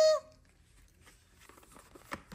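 A woman's held sung note, her vocal 'guitar solo', cutting off about a quarter second in. Then near quiet with a few faint clicks and rustles of a cardboard board book's flaps and page being turned.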